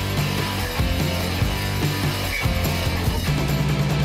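Rock music backing track, dense and steady in loudness with sustained low notes.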